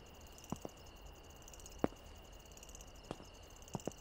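Faint night ambience: crickets chirring in a steady high-pitched tone, with a few short sharp clicks, the loudest about two seconds in.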